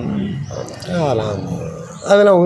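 A man's voice talking in conversation, with a drawn-out vocal sound about halfway through.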